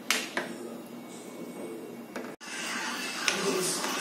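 A steel ladle clicking against a nonstick kadai while stirring thick curry gravy, with faint voices in the background. After a cut about halfway through, a steady hiss with another light click of the ladle.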